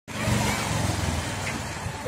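Street traffic: a motor vehicle engine running, with road noise.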